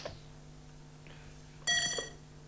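A quiz-show electronic chime: one short, bright ring of several high tones near the end, over a steady low mains hum.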